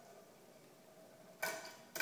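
Quiet at first, then about a second and a half in a sharp clack that rings briefly as a toy fingerboard carrying a budgie drops off the edge of a wooden cutting board onto a wooden table, followed by a smaller click near the end.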